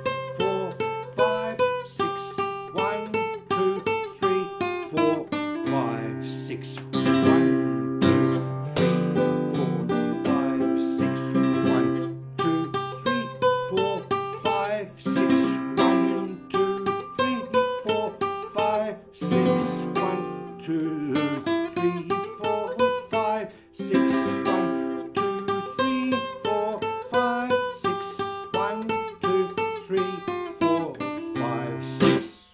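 Nylon-string flamenco guitar with a capo playing a sevillanas: rhythmic strummed chords and rasgueado strokes with sharp attacks, mixed with picked melodic runs over held bass notes.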